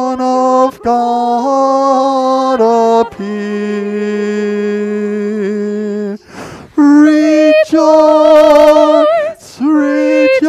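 A soprano singing a slow melody in held notes. A brief breath comes about six seconds in, and the later long notes carry a clear vibrato.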